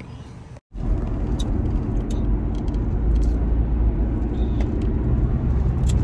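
Honda Civic driving, heard from inside the cabin: a steady low rumble of engine and road noise. It begins just under a second in, after a brief break.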